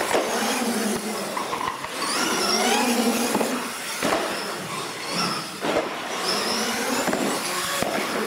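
Radio-controlled monster truck motor and gear drive whining, its pitch rising and falling with the throttle, with a few sharp knocks from the truck hitting the track.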